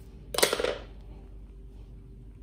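Scissors cutting into a thin RCA signal cable's plastic jacket: one short, sharp cut about half a second in.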